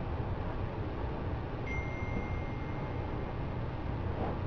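Steady room noise of an empty room: a low hum under an even hiss. A thin, high, steady tone comes in a little under halfway through and holds.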